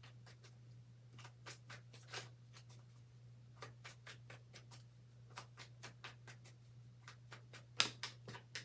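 A deck of tarot cards being shuffled by hand, giving a run of soft, irregular card clicks and slaps. A sharper snap near the end comes as cards fall out of the deck. A steady low hum runs underneath.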